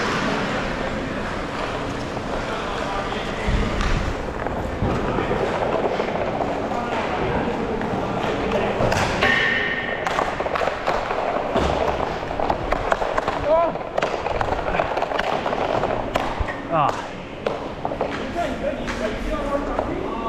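Indoor inline hockey rink sounds: indistinct voices in the hall, with scattered knocks and clicks of sticks and pucks and the roll of inline skate wheels on the plastic tile floor.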